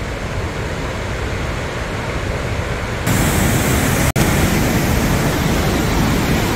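Spokane Falls: a steady rush of heavy whitewater. About three seconds in it becomes louder and brighter, with a momentary dropout a second later.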